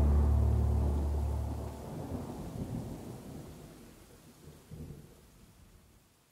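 A low sustained drone stops about 1.8 s in, leaving a sampled thunderstorm: rain hiss and low rolls of thunder fading out to silence at the close of an ambient intro track.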